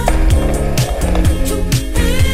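Skateboard wheels rolling over rough concrete, a steady rumble, under loud background music with a steady drum beat.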